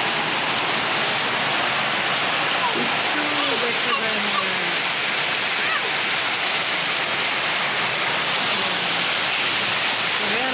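Heavy rain pouring down in a steady, even rush that does not let up.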